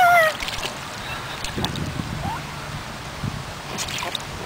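Water sloshing and lapping in a shallow inflatable kiddie pool as it is stirred by hand, opening with a brief high-pitched voice that falls in pitch.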